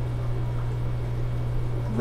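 Steady low hum with a faint watery hiss, the running filtration of a large aquarium.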